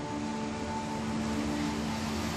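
Telenovela soundtrack playing from a television: tense background music of held, steady low tones under a standoff scene, heard through the TV speaker in the room.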